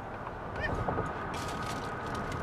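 Low rumble inside a car's cabin, with a few faint short sounds about halfway and a thin steady high tone coming in near the end.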